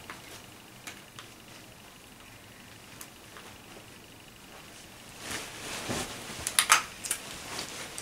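Small cosmetics packaging being handled and pried at by hand: a few faint clicks, then louder rustling from about five seconds in with a quick cluster of sharp clicks and snaps near six and a half seconds.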